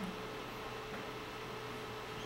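Room tone: a steady hiss with a faint, constant hum.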